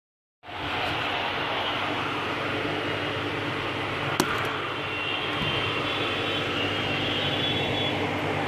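Aquarium pump running with a steady hum and hiss, and one short click about four seconds in.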